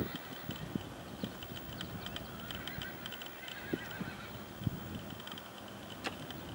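Muffled, irregular hoofbeats of a horse loping on soft arena sand, with a wavering horse whinny from about two to four seconds in.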